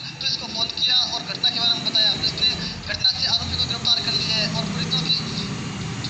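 Speech only: a news reader's voice from a television broadcast, heard through the TV's speaker.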